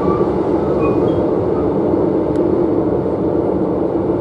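Running noise heard inside a Renfe series 450 double-deck electric commuter train at speed: a steady rumble of wheels on the track and the car body, even throughout.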